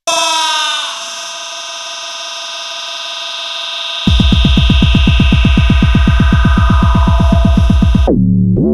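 Electronic music: a loud held synthesizer chord comes in suddenly, its notes bending into place over the first second. About halfway through, a fast, even pulsing bass beat of roughly nine hits a second joins underneath it.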